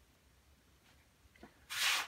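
Faint room tone, then a short, loud hiss of about a third of a second near the end.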